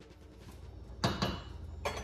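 Two sharp clinks of metal cookware, about a second in and again near the end, over a steady low hum.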